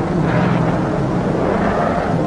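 Car engine running steadily as a vintage sedan pulls away and drives off.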